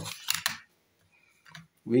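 Plastic Casio scientific calculator being picked up and moved over paper, a few light clicks in the first half second, then near silence.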